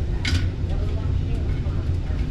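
A steady low machine hum, with one short scraping rustle about a third of a second in as the metal return-air grille is handled.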